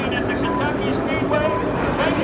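Grandstand crowd chatter, many voices talking over one another, with the steady drone of stock car engines on the track underneath.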